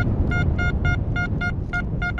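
XP Deus metal detector in Gary's Ultimate program giving a rapid run of short, identical beeps, about five a second, as the coil sweeps back and forth over a piece of lead. There is no threshold buzz between the beeps, and a low rumble runs underneath.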